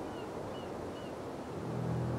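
Quiet background ambience: a soft, even hiss with a few faint, short, high chirps, then a low sustained music tone swelling in near the end.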